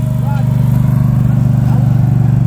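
Small engine of turf-preparation machinery running steadily at a constant speed.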